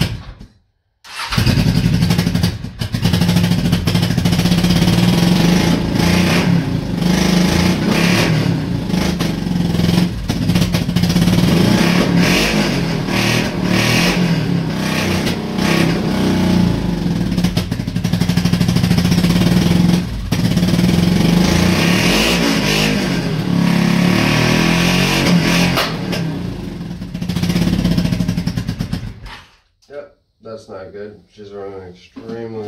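1984 Honda Shadow 700's V-twin engine running and revving unevenly, with several brief stumbles; it is silent for about a second near the start and cuts out just before the end. It is popping, with one cylinder cutting in and out, which the owner puts down to a fuel problem, maybe running a little lean.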